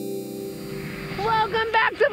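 Sustained keyboard background music cuts off at the start, leaving outdoor noise; from a little past one second in, a person's voice calls out.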